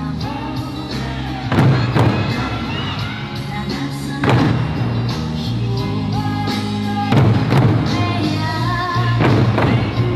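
Eisa drummers striking large barrel drums (odaiko) in unison, the heavy beats mostly coming in pairs a few seconds apart, over Eisa song music with singing.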